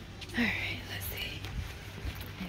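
A woman whispering, in a breathy voice with no clear pitch, over a low steady background hum.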